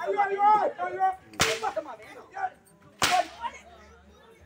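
Two sharp whip cracks about a second and a half apart, with raised voices shouting between them.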